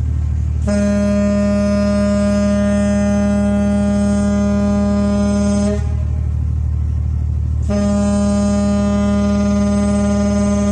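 Ship's horn of the Cokaliong passenger ferry M/V Filipinas Ozamis sounding two long, deep blasts. The first lasts about five seconds, and the second starts a couple of seconds later and is still sounding at the end. A steady low hum runs underneath.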